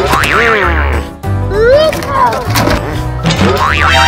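Bouncy background music with a steady bass pulse, overlaid with cartoon-style boing sound effects that swoop up and down in pitch several times.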